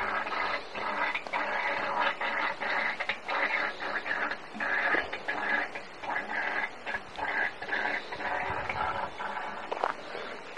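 Animal calls in a continuous run of short, pitched bursts, about two a second.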